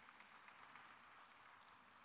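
Near silence: a faint, even hiss of hall room tone during a pause in the speech.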